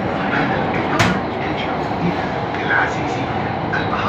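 Doha Metro train running through an underground tunnel, heard from inside the carriage: a steady running noise, with one sharp click about a second in.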